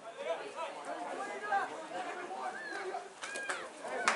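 Indistinct shouting and calling of voices across a rugby field, with a few short, sharp clicks about three and a half seconds in.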